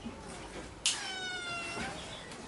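A cat meowing once: a single high, drawn-out meow about a second long that starts sharply partway in.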